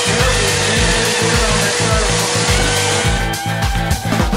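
A small handheld power tool whirring steadily, working pink styrofoam; it stops about three seconds in. Rock music with a steady beat plays underneath.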